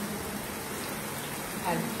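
Sliced onions, ginger and garlic frying in hot oil in a wok: a steady sizzle as the onions drop in.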